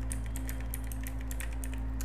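Typing on a computer keyboard: a quick run of key clicks as a word is typed.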